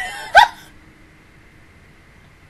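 A woman's short, high vocal squeak with rising pitch about half a second in, part of her laughter, followed by quiet room tone.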